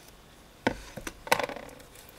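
Handling noise from a craft scalpel and its plastic cap: a few sharp clicks and taps over about a second, starting a little way in.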